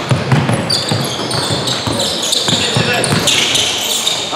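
A basketball being dribbled and players' sneakers thudding and squeaking on a hardwood gym floor during a fast break, a series of short thuds with a few sharp high squeaks.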